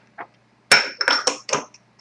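Small glass shot glasses clinking against each other and the counter as they are picked up: a few sharp clinks about a quarter second apart, with a high ringing tone.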